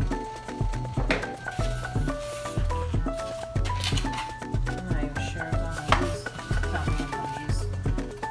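Background music with a steady beat and melody, with a couple of sharp clicks about a second in and just before six seconds.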